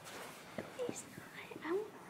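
Faint, indistinct voices: soft murmured speech with a few short bending pitches, much quieter than the talk around it.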